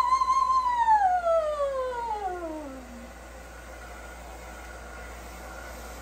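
A woman's singing voice on a vocal warm-up: a high note held with vibrato, then a smooth slide down about two octaves that fades out about three seconds in. A hand-held hair dryer blows steadily underneath and is left alone after the slide.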